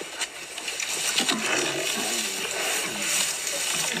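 Animal growls and calls from a lion attacking a buffalo at close range: several short calls that rise and fall in pitch.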